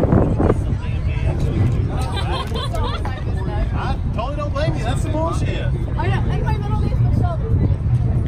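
Background chatter of several people talking over a steady low rumble.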